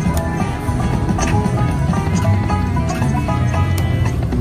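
Eureka Blast slot machine playing its free-games bonus music while a spin runs, with sharp clicks at intervals as the reels land.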